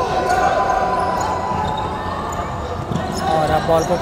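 A basketball bouncing on a hardwood indoor court during live play, echoing in the hall. A long held call sounds over the first couple of seconds, and a few short words come near the end.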